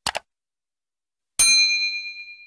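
Subscribe-button sound effects: a quick mouse click right at the start, then a bright notification bell ding about one and a half seconds in that rings on and fades.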